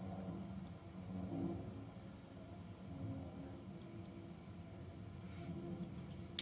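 Quiet small-room tone with a faint low hum and no distinct sound events.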